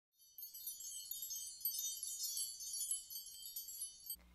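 Title-card sound effect of high tinkling chimes: many overlapping bell-like tones, all high-pitched, setting in about half a second in.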